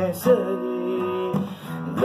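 A man singing to his own acoustic guitar accompaniment, plucked and strummed. He holds one long, slightly wavering note through most of the stretch, with a short dip in loudness near the end.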